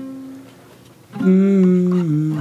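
Soulful vocal sample playing back: a held note fades into a short lull, then just over a second in a loud sung 'ooh' comes in with vibrato and holds.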